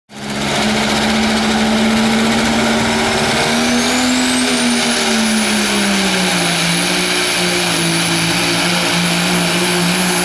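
Turbocharged Cummins diesel in a Dodge Ram pulling truck running flat out while dragging a weight sled. A high turbo whistle climbs about three and a half seconds in and then holds high. The engine note sags slightly about six seconds in and holds there as the engine is pulled down under the load.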